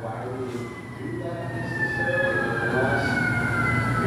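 A sustained high tone, several pitches together, gliding slowly and steadily down in pitch while growing louder, over faint voices.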